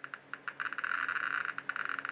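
Geiger-Müller tube counter clicking rapidly and irregularly, each click a detected particle of nuclear radiation from the radioactive sources. The clicks thicken after about half a second as the tube is lowered towards the sources.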